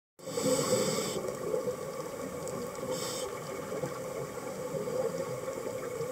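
Underwater sound picked up by a diver's camera: a steady rush of water noise, with a hiss near the start lasting about a second and a shorter hiss about three seconds in, the sound of a scuba regulator as the diver breathes in.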